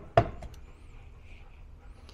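A single knock as a heavy prismatic LiFePO4 battery cell, about 5.8 kg, is set down on a digital scale, then quiet room tone.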